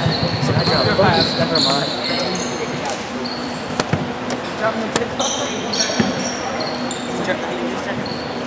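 Basketball bouncing on a hardwood gym floor amid many short, high sneaker squeaks, echoing in a large gym.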